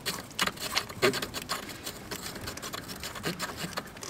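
Primary clutch puller being threaded into the primary clutch of a Can-Am ATV with a hand tool: a run of light, irregular metal clicks and small scrapes, several a second.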